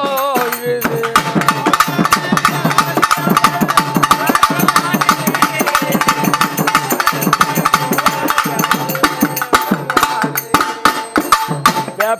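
Instrumental interlude of Tamil folk-devotional music: a pambai drum ensemble playing fast, dense strokes over a steady held tone. A sung line trails off about a second in.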